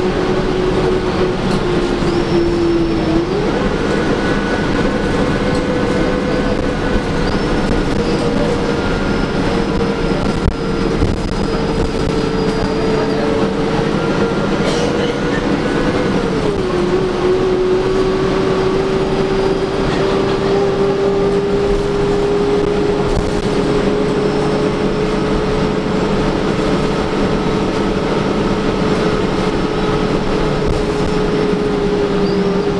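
Interior ride noise of a 2011 Gillig Advantage transit bus: a steady rumble under a drivetrain whine. The whine steps up in pitch about three seconds in, drops back down around sixteen seconds, then slowly climbs.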